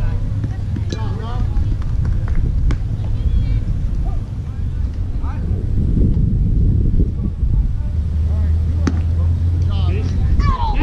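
Wind rumbling on the microphone over faint, distant voices of players and spectators on a baseball field, with a sharp knock about nine seconds in, around when the ball is put in play.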